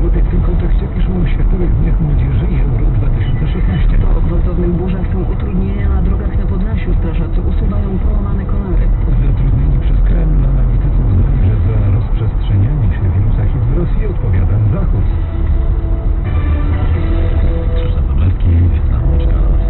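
A car radio playing music with a singing voice, heard inside the car cabin over steady low road and engine rumble.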